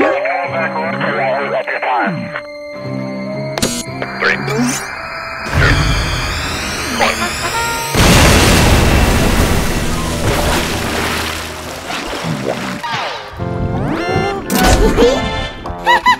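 Cartoon soundtrack: music and cartoon vocal noises, then a rising whistle that runs into a loud explosion sound effect about eight seconds in, which dies away over several seconds.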